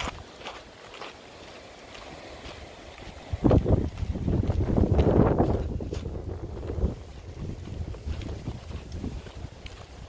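Wind buffeting the microphone as a low rumble, with a strong gust from about three and a half seconds in that eases off a few seconds later, over faint footsteps on dry ground.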